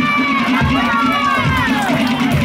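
Tahitian dance music: drums keep a steady beat while a voice holds one long call that slides down in pitch near the end.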